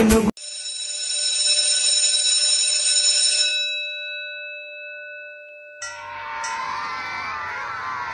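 Electric bell ringing continuously for about three seconds, then its tone dying away. About six seconds in, a chatter of many voices starts suddenly.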